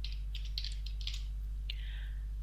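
Computer keyboard keys clicking in a handful of quick, irregularly spaced keystrokes over a steady low hum.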